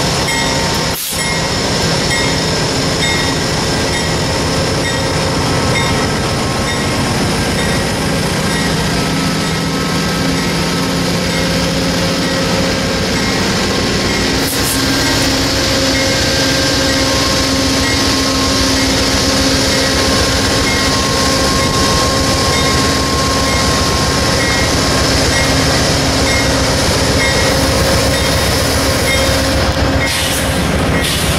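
Amtrak GE P42DC diesel locomotive running close by, its diesel engine giving a loud, steady drone with humming tones.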